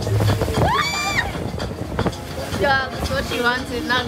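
A high-pitched shriek that rises, holds and falls off about half a second in, followed near the end by quick bursts of laughter, over the steady rush of wind and water on a small motorboat running through chop.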